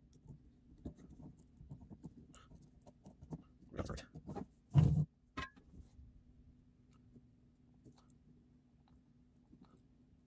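Faint scratching and small clicks from handling a circuit board and soldering iron at a workbench, with a couple of louder bumps about four and five seconds in and a sharp click with a brief ring just after.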